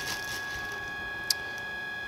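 Quiet handling of a plastic-wrapped pack of disposable face masks, a faint rustle, with one sharp short click a little over a second in. A steady high electrical hum runs underneath.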